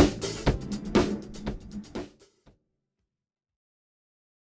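Drum kit played along with a disco-funk backing track at the end of the song: a few last spaced hits, each fading away, then the sound stops about two and a half seconds in.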